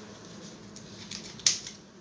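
Scissors cutting open a sheet-mask sachet: a few faint clicks, then one sharp snip about one and a half seconds in.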